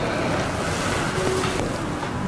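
A steady rushing noise, like air blowing across the microphone, with no clear pitch or rhythm.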